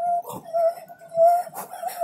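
A bird calling: a short, clear pitched note repeated about every half second, four times.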